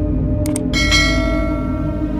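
A quick double mouse-click sound effect, then a bright bell chime that rings on and slowly fades: the notification-bell sound of a subscribe-button animation, over dark ambient background music.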